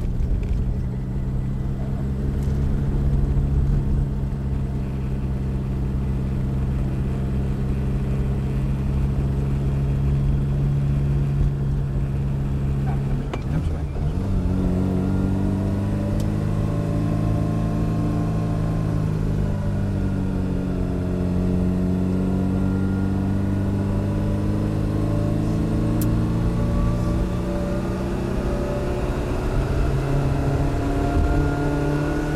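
Opel 1204's 1.2-litre four-cylinder engine heard from inside the cabin, running at a steady pitch for the first half. After a short break about halfway through, its pitch rises and falls slowly as the car speeds up and slows.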